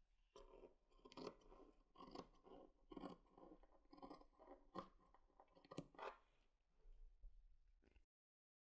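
Faint snips of large dressmaking shears cutting through woolen knitted fabric, about one cut a second, stopping about six seconds in.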